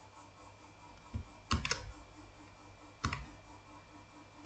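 A few keystrokes on a computer keyboard, typing into a spreadsheet cell: a soft tap, then two sharp presses close together about a second and a half in, and another about three seconds in, over a faint steady hum.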